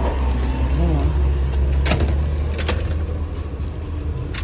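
Steady low rumble of a running vehicle, with a few sharp knocks of the phone being handled against clothing about two seconds in and again shortly after.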